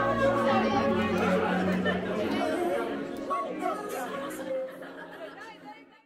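Music with a crowd of voices chattering over it, the whole mix fading out steadily to silence by the end.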